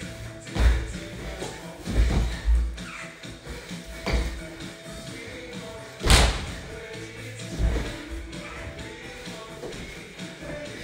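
Music playing, with heavy thumps of a person's body and feet hitting a laminate wood floor during burpees, about one every one and a half to two seconds. The loudest thump comes about six seconds in.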